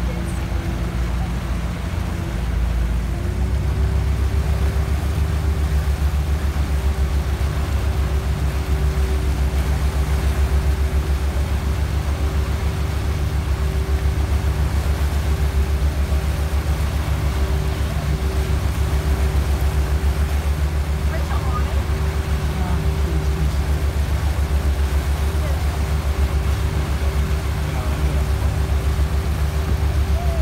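Motorboat engine running steadily while towing a tube at speed, with wind and churning wake noise over it. The engine note rises slightly and gets louder about three seconds in, then holds.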